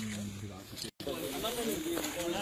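People talking, voices indistinct, with a brief complete dropout just before a second in.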